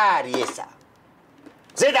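Speech: a voice trailing off in the first half-second, a pause of about a second, then speech again near the end.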